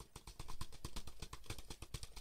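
Typing on a Logitech Combo Touch iPad keyboard case: a rapid, even run of light key clicks.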